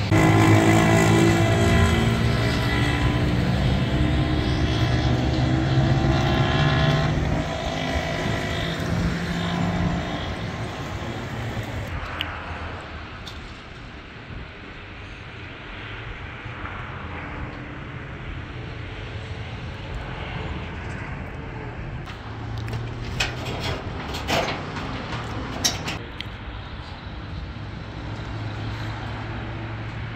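A motor vehicle engine running for about the first twelve seconds, its pitch shifting in steps. It then gives way to a quieter outdoor background with a low steady hum and a few sharp knocks a little past the middle.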